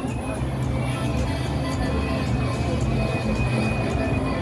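Busy city street ambience: car traffic running by, with music and voices mixed in.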